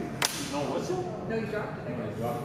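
A single sharp crack of a hockey impact about a quarter second in, over faint voices in the rink.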